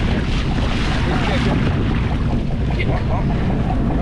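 Wind buffeting the microphone over water splashing and rushing along a boat's hull around a sailfish held by the bill at the boat's side. The noise is steady, with no sharp knocks or shots.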